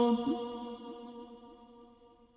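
The last held note of a chanted recitation dying away in a long echo. It keeps the same pitch and fades steadily to almost nothing by the end.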